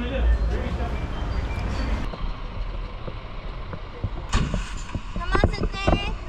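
Passenger van running, heard from inside the cabin as a steady low rumble with road noise, with a few sharp knocks and rattles in the last two seconds.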